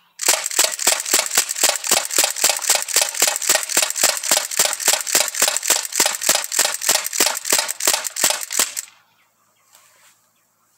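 Sig Sauer MPX ASP air rifle, powered by a 12-gram CO2 cartridge, firing a rapid string of semi-automatic pellet shots, about three sharp cracks a second. The string stops about nine seconds in.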